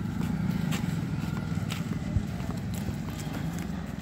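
Steady low rumble of an open passenger vehicle rolling slowly over a brick-paved lane, with a few scattered knocks and rattles.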